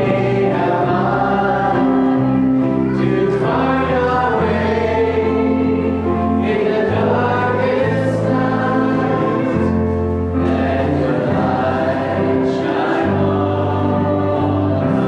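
Congregation singing a hymn together, led by a small worship band with keyboard accompaniment; long held notes over a bass line that moves every second or two.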